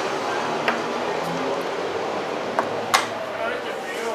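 A few sharp clicks of plastic chess pieces being set down and a chess clock being pressed during a blitz game, the loudest about three seconds in, over a low murmur of voices.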